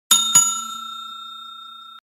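Bell-ring sound effect for the notification-bell animation. It is struck twice in quick succession, then rings on, slowly fading.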